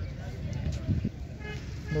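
Steady low rumble on the microphone, with a brief faint voice about a second in. About a second and a half in, a steady high-pitched tone starts and holds.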